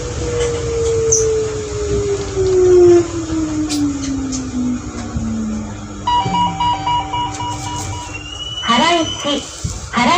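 New Shuttle 1050-series rubber-tyred people-mover slowing down, its motor whine falling steadily in pitch over a running rumble as it brakes into a station. Partway through, a repeating electronic beep chime sounds for about two seconds, then a voice comes in near the end.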